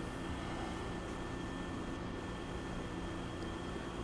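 Steady low machine hum with a light hiss, unchanging throughout, with no knocks or clicks.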